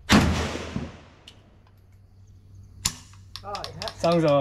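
A single AK-47 shot fired on semi-automatic, its report ringing out and fading over about a second. A sharp click follows nearly three seconds in.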